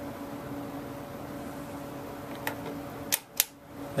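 Rotary range selector switch of a Conar Model 211 vacuum-tube voltmeter being turned, three short clicks in the second half over a steady low hum.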